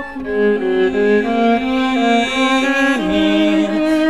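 Bowed viola in a slow song, holding sustained notes that move in steps and short slides, with several pitches sounding together.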